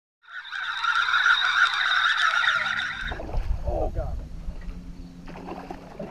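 Steady rushing water noise with a thin high whine, recorded by an underwater fishing camera as it moves through the water. About three seconds in it cuts off abruptly and is replaced by the low, steady hum of a boat's motor.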